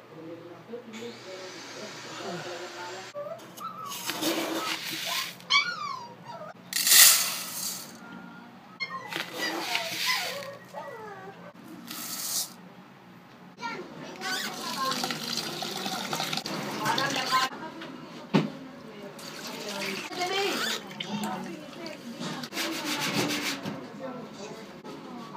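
Uncooked rice poured into a stainless-steel pot in short hissing pours, followed by rice being rinsed by hand in the pot with water at a sink.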